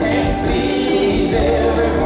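Live country-rock band playing, with strummed acoustic guitars under a sung lead vocal and several voices singing together.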